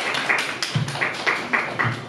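A small group of people clapping together in a steady rhythm, about four claps a second.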